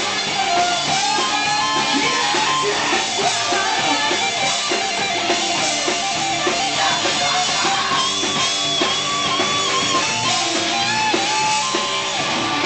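A live rock band playing an instrumental passage: an electric guitar plays a lead line of long held notes over a drum kit, loud throughout.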